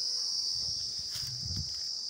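A steady, high-pitched insect chorus, with a soft low rustle about half a second to a second and a half in.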